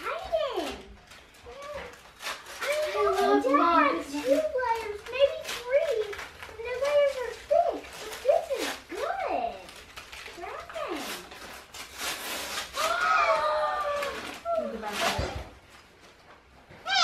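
Children's high voices chattering and exclaiming, with bursts of wrapping paper being torn.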